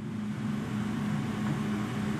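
A steady low hum over faint background noise: room tone with an electrical or ventilation drone.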